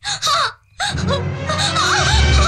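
A woman's loud wailing cry with a gliding pitch, breaking off about half a second in and starting again, while dramatic film score music comes in underneath it.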